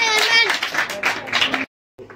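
Children clapping quickly and unevenly, with a child's high voice calling out and falling in pitch over the first half second. The sound cuts off suddenly near the end.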